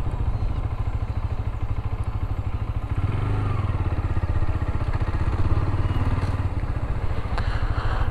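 Dafra Next 300 motorcycle engine running at low revs as the bike is ridden slowly, picking up slightly about three seconds in. The new engine is being run in and is held below 5,000 rpm.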